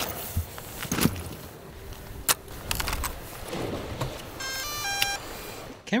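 Handling noise as a bag and drone gear are set down on a concrete wall: a few knocks and rustles. Near the end comes a quick run of high electronic start-up beeps from the drone gear powering on.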